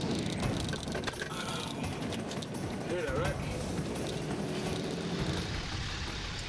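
Steady street traffic noise with scattered clicks, and a brief voice about three seconds in.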